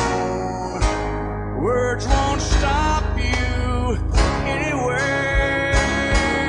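Classic country music with guitar.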